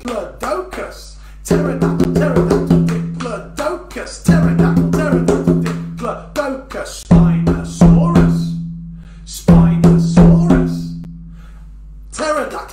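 Rhythmic percussion beat for a join-in body-percussion activity: a steady run of sharp strikes, with a low note that swells in four times and holds for a second or two each time.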